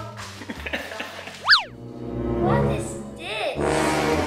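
A cartoon-style sound effect: a quick whistle-like glide that swoops up and back down about a second and a half in, followed by playful background music with another short downward swoop near the end.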